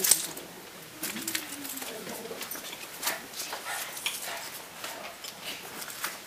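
Scattered taps and scuffs of shoes on a hard tiled floor as dancers step and kick, with a sharp knock right at the start and faint murmured voices.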